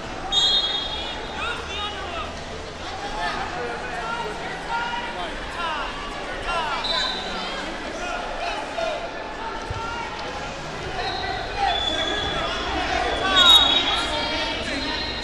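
Busy wrestling hall: shoes squeaking on the mats throughout, a few short high whistle blasts, the loudest near the end, over a steady murmur of voices.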